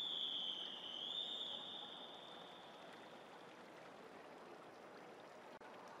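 Referee's whistle: one long, steady blast that wavers slightly in pitch and fades out after about three and a half seconds, the long-whistle signal for backstroke swimmers in the water to take their starting position. A faint, even pool-hall hubbub lies under it and carries on after the whistle stops.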